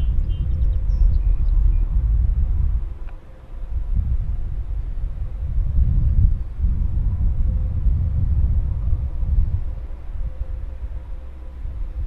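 Wind buffeting the microphone outdoors: a loud, gusting low rumble that eases off briefly about three to four seconds in, then picks up again.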